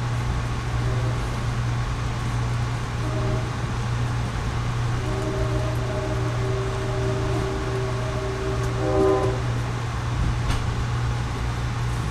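Locomotive air horn sounding ahead of the train, heard muffled from inside an Amtrak passenger car over the steady low rumble of the train running: a short blast about three seconds in, then a long blast from about five seconds that swells and cuts off about nine seconds in.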